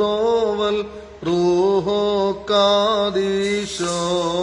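A man chanting a Syriac Orthodox kukkilion hymn in long held notes with ornamented melodic turns. The phrases are broken by short pauses for breath, about a second in and again later.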